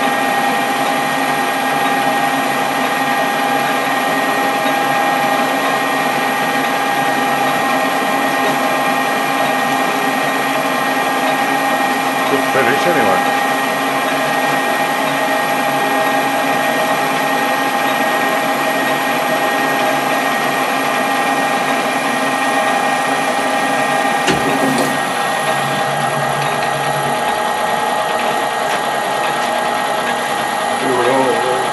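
Metal lathe, likely a Colchester Bantam, running under power feed while a tool turns down a steel bar: a steady gear whine with a constant cutting sound.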